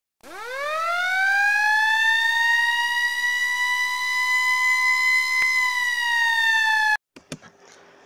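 Siren-like sound effect for a channel logo intro: one tone that winds up in pitch over about two seconds, holds steady, then cuts off suddenly about seven seconds in.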